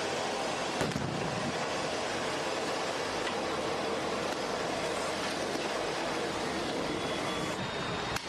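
Steady outdoor street noise, dense and unbroken, with a single short bang about a second in.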